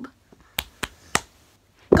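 A person snapping their fingers three times in quick succession, sharp dry snaps.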